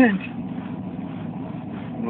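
Steady rumble of road and engine noise inside a moving car's cabin.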